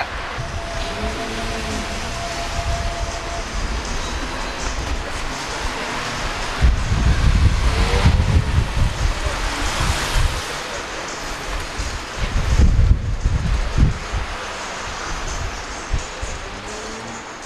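Outdoor street noise on a camcorder microphone, with wind buffeting the microphone in heavy low rumbles that swell twice, once about halfway through and again near the end.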